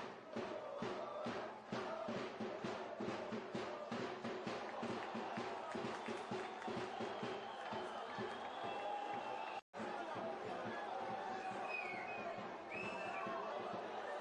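Faint stadium crowd ambience with a rhythmic beating, about three beats a second, for most of the first eight seconds. After a brief cut, distant shouts and calls come over a steady crowd murmur.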